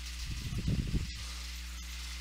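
A pause between spoken sentences, filled by the recording's steady low electrical hum and faint hiss. A brief, soft low sound, such as a breath or a bump on the microphone, comes about half a second in and lasts under a second.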